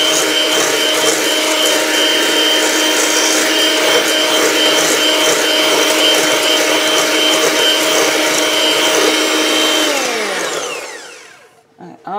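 Electric hand mixer with whisk beaters whipping egg whites nearly to stiff peaks in a stainless steel bowl, its motor running at a steady high speed. About ten seconds in it is switched off and winds down with a falling pitch.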